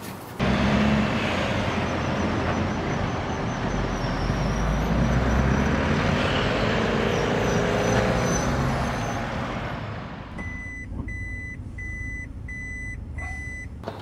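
A motor vehicle's engine running with a low rumble, easing off after about nine seconds. Then a reversing alarm beeps about five times, a little over half a second apart.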